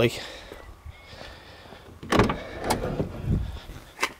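The driver's door of a small hatchback, a 2012 Citroën C1, opening: a sharp clunk of the latch about halfway through, followed by two lighter knocks.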